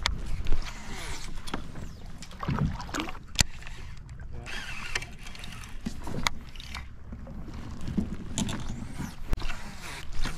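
Water sloshing against a fishing kayak's hull with low rumble on the microphone, and a few sharp clicks and knocks from a baitcasting rod and reel being handled.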